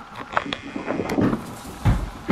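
A small dachshund running on a wooden floor after a thrown rubber bone: scattered clicks and scrabbling, with a heavy thump just before the end as the loudest sound.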